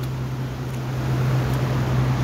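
Steady rushing of muddy rainwater running off in a torrent over eroded ground, under a constant low hum.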